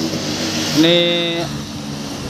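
A man's voice holds one drawn-out word a little under a second in, over a steady low hum and hiss in the background.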